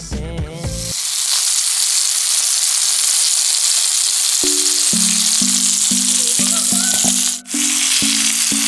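Chicken breasts frying in a pan, a steady sizzle that starts about a second in as the music before it stops. A few held music notes come in over the sizzle about halfway through, and the sound drops out briefly just before the end.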